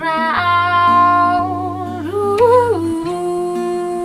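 A woman singing long, wordless held notes, rising briefly in pitch a little past halfway and then holding one long note, over a sustained acoustic guitar accompaniment.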